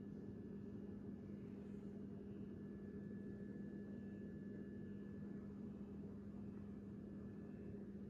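A steady low hum under faint hiss, unchanging throughout: room tone.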